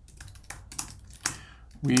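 Computer keyboard being typed on: a quick, irregular run of key clicks as a sentence is entered.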